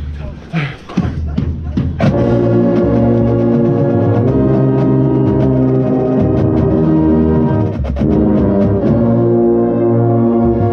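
A drum corps brass line plays loud, sustained chords that start about two seconds in. The contrabass bugle right at the microphone is heavy in the low end. There is a brief break near eight seconds, then the next chord comes in. Before the brass enters there are voices and the sound of people moving about.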